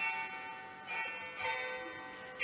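Hammered dulcimer (cymbały) playing a slow instrumental passage: a few struck notes, roughly every half second to second, each left ringing with bright overtones.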